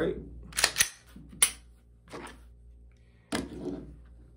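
Sharp mechanical clicks of an unloaded Gen 2 Glock 19 pistol being worked in the hands: a quick pair about half a second in, then a single louder click about a second and a half in. A softer click follows, and near the end there is a knock.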